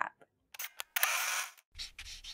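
Camera shutter sound effect: a few quick clicks about half a second in, then a short whirring rush of noise, and a low rumble near the end as the picture changes.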